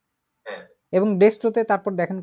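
Speech only: a person talking, starting about a second in after a short quiet spell.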